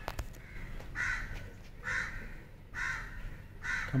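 A crow cawing four times, one short, harsh caw about every second.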